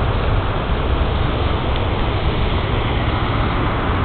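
Wind buffeting the phone's microphone: a steady low rumble over a constant even hiss.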